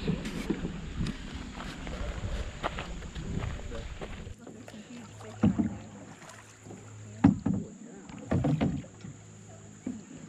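Canoe paddling on a river: after a noisy first few seconds, a handful of sharp knocks of the paddle against the canoe's side, with water splashing from the strokes.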